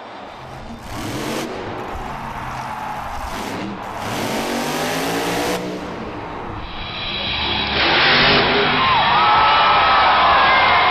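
Monster truck engine revving up and down in a stadium arena. About six to seven seconds in, the sound cuts to a duller recording that grows louder, with a crowd cheering and whooping.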